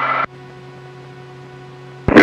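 Aircraft cockpit audio line: a steady electrical hum cuts off suddenly about a quarter second in, leaving a faint steady hiss with faint humming tones.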